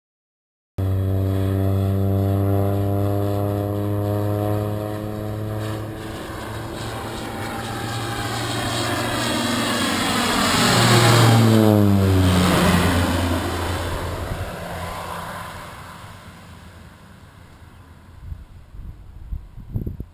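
Crop-dusting airplane's engine and propeller flying low overhead: the drone cuts in about a second in, builds to a peak, drops sharply in pitch as the plane passes, then fades away.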